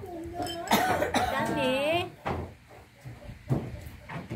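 Speech: a person's voice talking, with a drawn-out, gliding stretch of voice about a second in, and a short knock near the end.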